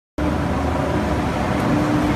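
Steady street traffic noise with a low, even hum from an electric trolley bus standing close by.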